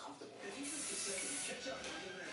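A steady hiss lasting about a second, starting about half a second in, over faint background talk.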